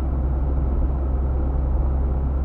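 Steady low rumble of a car driving, its engine and road noise heard from inside the cabin.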